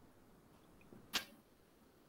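A pause between speakers on a video-call recording: near silence, broken once, a little after a second in, by a brief sharp hiss-like sound.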